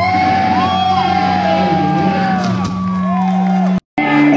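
Loud electric guitar through Marshall amps in a live rock band, held lead notes bending up and down over a steady low chord. The sound cuts out abruptly for a moment near the end.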